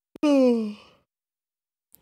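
A man's voiced sigh, one falling sound lasting under a second, close to the microphone.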